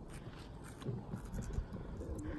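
Faint scraping and light taps of a stick stirring thick slime in a small glass jar.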